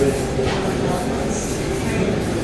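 Steady café room noise: other diners talking in the background, with no single event standing out.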